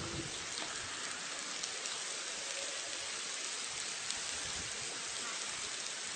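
Amplified sound of ants: a steady hiss with a few faint scattered ticks.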